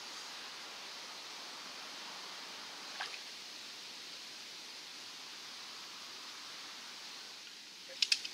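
Steady, faint outdoor hiss by the canal water while a hooked chub is played, broken once about three seconds in by a short sharp sound.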